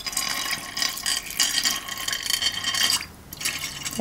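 Water poured from a glass onto a heap of small stones in a glass baking dish, splashing and trickling over the stones and the glass. The pour eases off about three seconds in, with a short dribble after.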